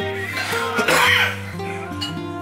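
Background music of steady held notes, with a short breathy burst from a person, cough-like, about a second in.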